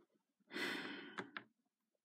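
A person's sigh: one breathy exhale of about a second, with two light clicks near its end.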